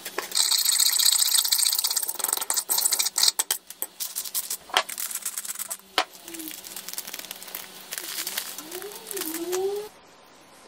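Fork beating egg on a ceramic plate: fast, dense tapping and scraping of the tines against the plate for about three seconds, then a few separate clicks.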